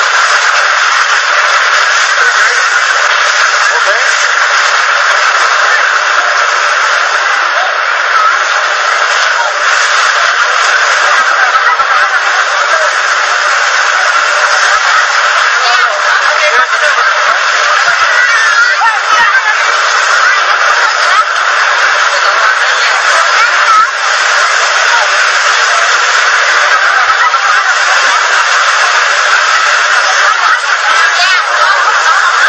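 Surf washing onto a beach with a crowd's voices mixed into it, one loud, unbroken rush of noise. The old recording is thin, with no low end.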